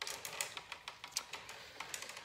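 A paintbrush working acrylic paint: a quick, irregular run of small dry ticks and taps as the brush dabs and scrubs.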